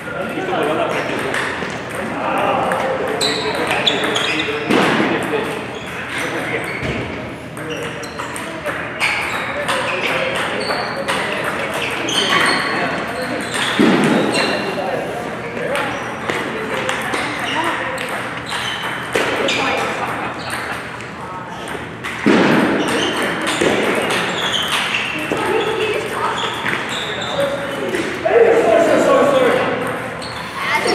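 Table tennis ball ticking off paddles and the table in quick rallies, the short sharp hits coming every second or so.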